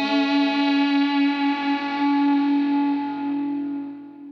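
A distorted electric guitar note rings on its own with echo, held steady and fading away towards the end: the last sustained note of a metal track.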